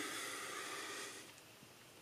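A faint, breathy hiss that fades out about a second and a half in.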